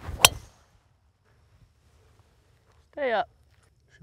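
A golf driver striking a ball off the tee: one sharp crack about a quarter second in, fading quickly. A brief voice with a falling pitch follows about three seconds in.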